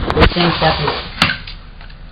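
A few sharp metallic clicks and knocks from handling a chrome shower-valve escutcheon plate, the loudest at the start and another about a second and a quarter in, with brief mumbled speech between them.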